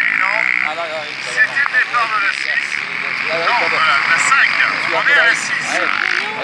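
A field of racing quads at the start line, many engines running at once with riders blipping their throttles in short rising-and-falling revs, with voices over them.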